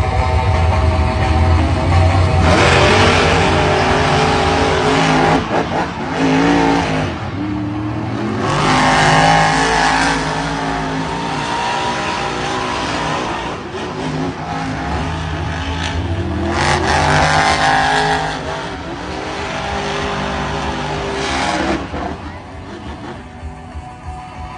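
Monster truck engines racing on a dirt track, the engine note rising and falling with the throttle. There are three loud full-throttle surges: about three, nine and seventeen seconds in.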